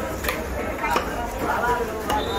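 Heavy fish-cutting knife chopping through a fish onto a wooden stump chopping block, striking twice, about a quarter second in and again about a second in.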